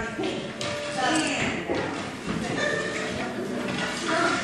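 Children's voices talking in a large hall.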